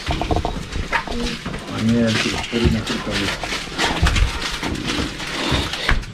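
Several people talking at once in a small shop, with a few brief knocks of items being handled.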